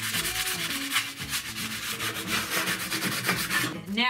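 Hand sanding pad rubbing quick back-and-forth strokes over the painted edge of a metal tray, several strokes a second, stopping just before the end. The strokes distress the chalky paint so the silver metal underneath shows through.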